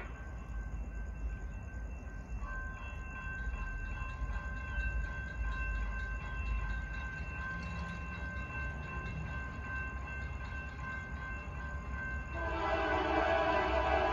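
Low rumble of an approaching freight train with faint steady horn tones in the distance; about twelve and a half seconds in, the lead locomotive's multi-note air horn sounds much louder, held as a steady chord.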